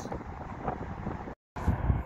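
Strong wind buffeting a phone's microphone, a rough, steady rumble. About one and a half seconds in it cuts off for a moment, then comes back louder.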